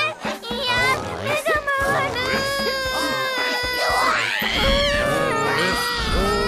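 Several high character voices shouting and yelling together in long held, wavering cries, straining as they haul on a rope, over background music.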